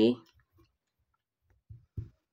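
Near silence with a few faint dull taps, then two soft low knocks near the end, from a ballpoint pen and hand pressing on a workbook page while writing.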